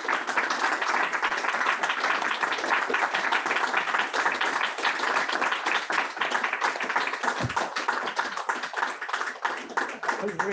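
Audience applause: many hands clapping steadily, easing off slightly near the end.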